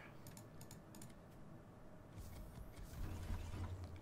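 Faint computer keyboard clicks, a few quick ones within the first second, then a low muffled rustle from about two seconds in.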